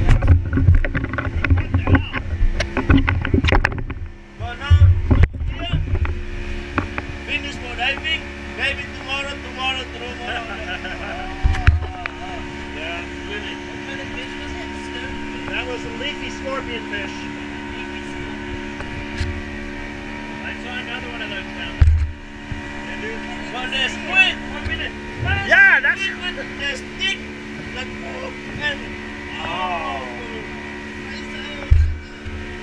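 Outboard motor on a small boat running steadily at speed, with a constant engine drone. Low thumps come now and then, mostly in the first few seconds and again twice later.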